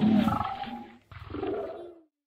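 A roar like a big cat's, dying away about a second in, followed by a quieter growl that cuts off suddenly at the end.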